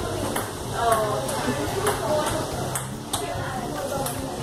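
Indistinct background voices, with short, light, high-pitched clinks, a few a second, over a steady low room hum.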